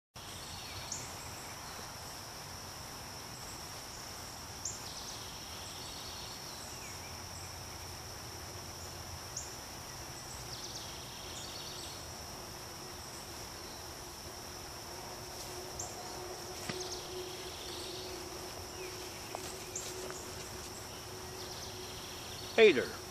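Steady, high-pitched insect chorus, a continuous trill, with a shorter buzzy call repeating about every six seconds. A faint low hum joins about halfway through.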